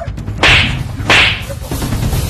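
Two sharp whip-crack strikes about two-thirds of a second apart, each fading quickly, as blows land in a fight.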